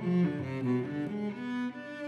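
Giovanni Viotti GV-790 cello being bowed solo in a passage of sustained notes that move from one pitch to the next. It grows softer toward the end.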